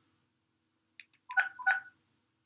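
Phone keypad tones (DTMF): a faint key click about a second in, then two short dual-tone beeps about a third of a second apart, as a reference number is keyed into an automated phone menu.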